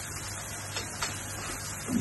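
Steady low kitchen background hiss, with a couple of faint light clicks about a second in from hands handling small items on the counter.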